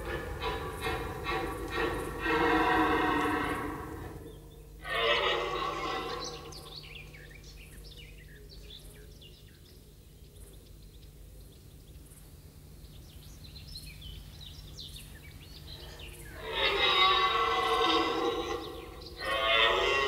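Rutting red deer stags roaring: a long roar lasting about four seconds at the start, another about five seconds in that falls in pitch, and two more close together near the end, with a quieter stretch between. The calls are the stags' rut bellowing, proclaiming their ground and challenging rivals.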